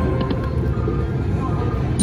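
Piggy Bankin video slot machine spinning its reels, its electronic spin sounds over the steady low rumble and background voices of a casino floor.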